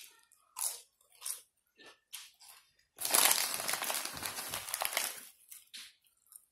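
Close-up crunching and chewing of chips: a few short crunches, then a loud stretch of dense crunching lasting about two seconds, halfway through.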